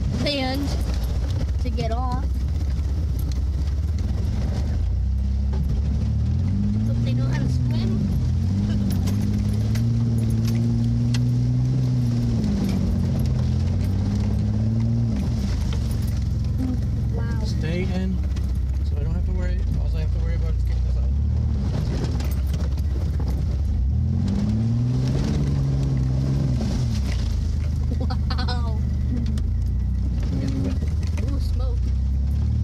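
A 4x4 engine is heard from inside the cab as the vehicle creeps through iced-over floodwater. It runs with a steady low drone, and the revs rise and fall in two longer stretches, about a third of the way in and again near the end.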